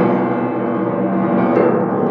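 Upright piano played in full, low-pitched chords that ring on, with a new chord struck at the start and another about one and a half seconds in.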